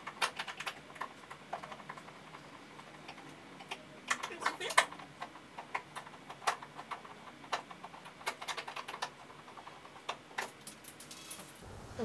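Irregular small clicks and ticks of a screwdriver backing out the screws that hold a TV stand leg, coming in loose clusters with a louder click about five seconds in. Near the end, clicks as the loosened leg is pulled off.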